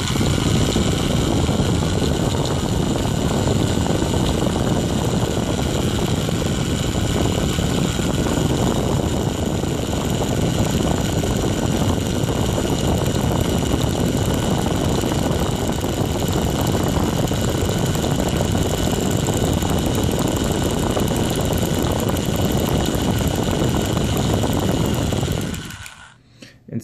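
Cheap, pretty loud handheld power drill running steadily with a high motor whine, stopping near the end. It spins a twisted coil wire clamped in its chuck while the wire is drawn lightly through toothless pliers, flattening it into interlock wire.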